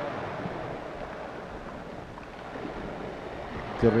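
Electric box fan running: a steady rush of air noise.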